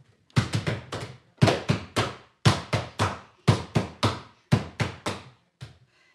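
Wooden laundry beater paddle beating linen on a wooden table: sharp wooden knocks in quick runs of about four, a run roughly every second.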